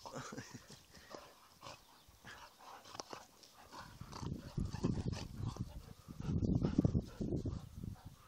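Two dogs play-fighting: scuffling at first, then two bouts of low, rough growling in the second half.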